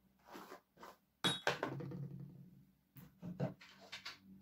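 Rustling and handling noise in several short, irregular bursts, the loudest a little over a second in, as hair and clothing rub close to a clip-on microphone while a flat iron is worked through the hair.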